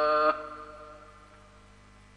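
A male Quran reciter's long held melodic note ends about a third of a second in, and its reverberation fades away over the next second. A faint steady mains hum and hiss from the old broadcast recording remain.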